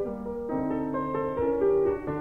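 Instrumental piano music: a flowing line of notes over held chords.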